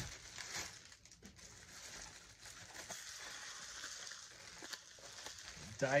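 Plastic bubble wrap crinkling and rustling as it is unwrapped by hand, a continuous rustle with a few sharper crackles.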